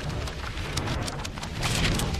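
Heavy rain with a low rumble of thunder, growing louder.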